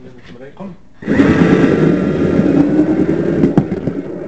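Humming and rolling noise of a model railway motor car, carried straight into the camera through its magnet mount. It grows loud suddenly about a second in and stays loud, with voices mixed in nearby.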